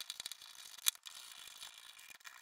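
Small screwdriver driving a screw into a 3D-printed plastic case: faint, rapid clicking and ticking, with one sharper click a little before the middle.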